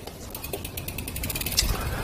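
Bicycle freewheel hub clicking in a rapid, even run of ticks as the bike is wheeled along, with a low thump near the end.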